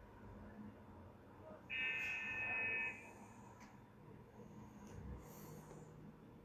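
A steady high-pitched tone lasting a little over a second, starting about two seconds in, over faint room noise.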